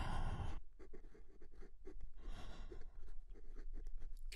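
A breathy exhale right at the start and another about halfway through, with soft scattered clicks and light rustling between them.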